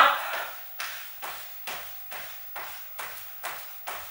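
Light, evenly spaced taps of sneaker soles on a wooden floor, about two a second, as a dancer keeps up small continuous bounces on the spot: the micro bouncing that underlies shuffle-dance steps.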